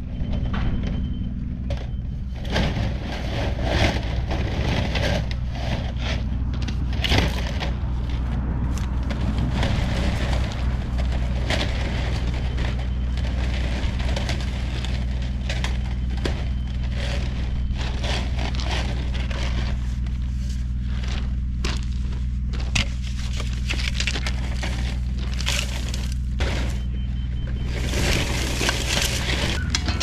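Crackling of corrugated plastic drain pipe being uncoiled and handled, with footsteps crunching on crushed rock, over a steady engine hum. The crunching grows louder near the end.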